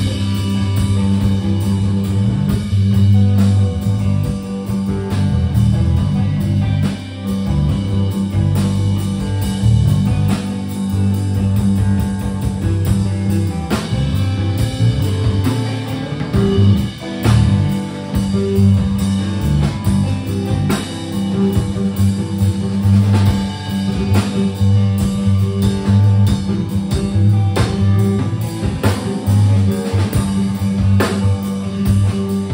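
Live instrumental rock trio playing: electric guitar through effects, bass guitar and drum kit, with no vocals. Strong sustained bass notes run under steady drum hits.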